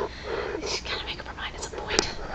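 A woman's soft, whispered voice with breathy laughter, and a sharp click near the end as the webcam is handled.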